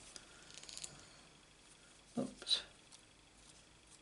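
Faint handling of a thin die-cut paper butterfly: a light papery rustle in the first second, then two short soft scrapes a little past halfway.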